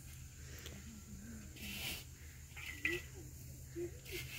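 Soft rustling hiss of hands scooping and scattering a dry, crumbly cow-dung and cocopeat fertilizer into a hole in loose soil, in short strokes about halfway through and again near three seconds in. A faint voice murmurs in the background.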